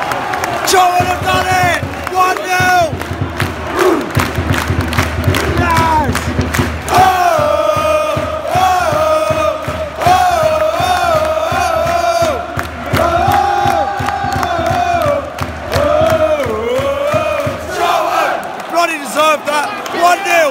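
Football crowd celebrating a home goal: cheering and shouting at first, then many voices singing a chant together in long phrases that rise and fall.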